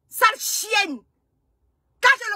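A woman's brief two-syllable vocal outburst with a breathy, hissing start, cut off abruptly about a second in and followed by dead silence.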